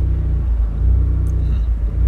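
Fiat 124 Spider Abarth's 1.4-litre MultiAir turbo four-cylinder running under way. Its note dips briefly about half a second in and again near the end.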